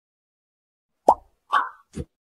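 Three short plop sound effects from an animated intro, starting about a second in and about half a second apart; the first rises in pitch.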